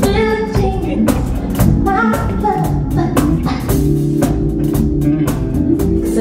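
Live soul band with drum kit, bass guitar and guitar playing a steady groove, and a woman's voice singing two short phrases over it near the start.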